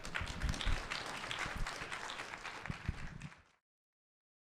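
Audience applauding, a dense patter of many hands clapping, which cuts off abruptly about three and a half seconds in.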